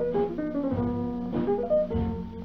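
Instrumental break of a 1938 small-band swing record: a guitar plays a run of short single notes over the band's sustained chords, with the narrow, dull sound of an old 78 rpm transfer.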